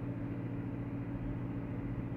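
Steady low background hum made of several fixed low tones, with a faint hiss above them.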